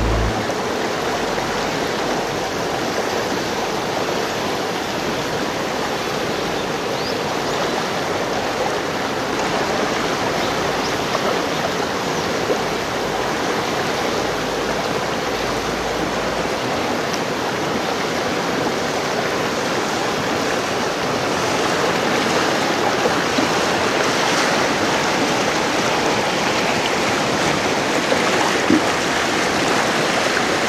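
Whitewater river rapids rushing steadily, a dense continuous wash of churning water that grows a little louder about two-thirds of the way through.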